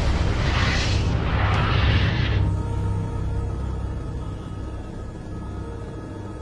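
Dark, tense score music with a loud rushing rumble of flames laid over it. The rush cuts away about two and a half seconds in, leaving low sustained tones that slowly grow quieter.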